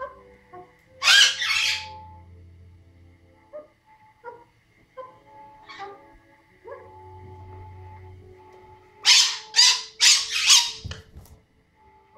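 Music with a simple melody playing throughout, with loud, harsh animal calls over it: two close together about a second in and a quick run of four near the end.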